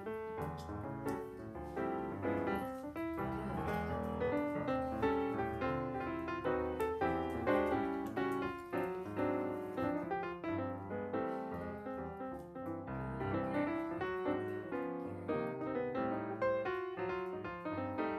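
Background piano music, a busy flow of notes.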